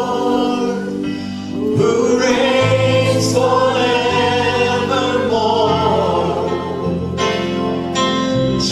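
Christian worship music: a choir singing long held notes over slowly changing chords.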